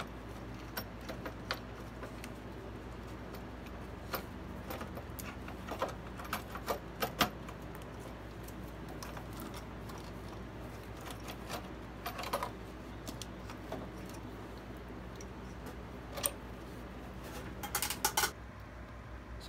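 Scattered metallic clicks and clinks of hands and tools working a valve cover loose from a Ford 4.0L SOHC V6 and lifting it out, over a steady low hum.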